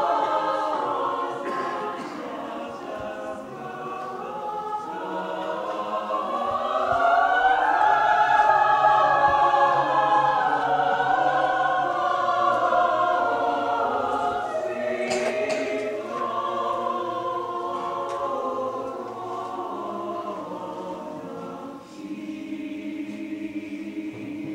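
Several voices singing together in a slow, sustained passage of a live opera performance. Near the end the singing thins into a steadier held musical line.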